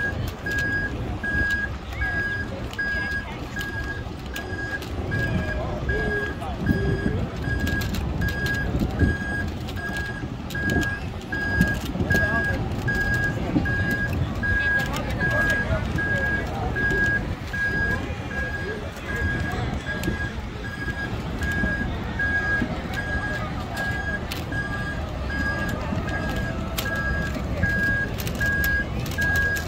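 A vehicle's electronic warning beeper sounding steadily, one pitch, about three beeps every two seconds, over crowd chatter and background music.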